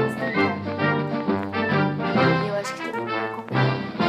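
Instrumental background music: a melody of quickly changing notes over lower sustained notes.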